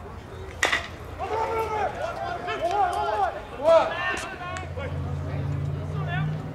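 A pitched baseball smacks into the catcher's mitt with one sharp pop just after the start, followed by several seconds of players' shouted chatter. A low steady hum comes in near the end.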